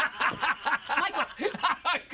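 A man laughing hard in quick repeated bursts, about four a second.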